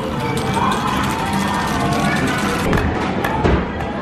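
Busy amusement-arcade din: electronic game-machine music and sound effects with background chatter and scattered clicks and thumps.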